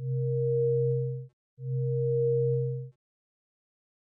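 Synthesized electronic sound effect for a graph curve being drawn: a steady low tone with a fainter higher tone over it, sounding twice for about a second and a quarter each, with a short break between.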